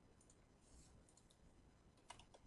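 Near silence with a few faint clicks of a computer mouse and keyboard as a menu item is chosen, a text box clicked into and the first letter typed.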